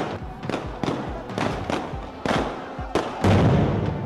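Rapid series of sharp explosive bangs, about two to three a second, with a louder, deeper blast about three seconds in, over background music.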